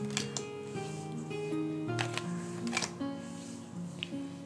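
Soft instrumental background music of slow, held notes, with a few brief clicks of tarot cards being laid down.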